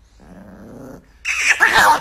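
Chihuahua growling low while being petted, then about a second in breaking into a loud, sharp outburst of snarling and yapping: an angry warning at being touched.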